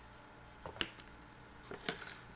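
Two sharp clicks about a second apart, each with a softer tap just before it, as a plastic bottle of cooking oil is picked up and handled, over a faint steady background.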